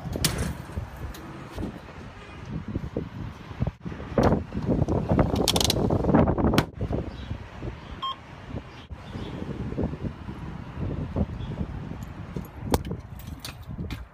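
Rumbling handling noise with clicks and rustles at a gas pump. About eight seconds in, a short electronic beep sounds as a pump keypad button is pressed.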